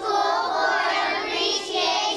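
A class of young children calling out together in unison, their words drawn out almost like singing.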